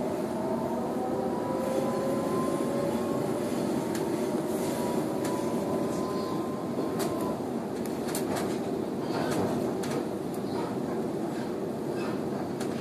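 Sydney suburban electric train heard from inside the carriage as it picks up speed after leaving a station: a steady rumble of wheels on rails, with a faint whine from the traction motors that rises slowly in pitch during the first seven seconds or so and then fades out. After that, a scatter of sharp clicks and rattles as the wheels run over the track.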